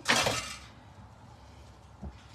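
Stainless steel kitchenware clinking and clattering briefly, a metal-on-metal knock that dies away within about half a second, followed by faint handling.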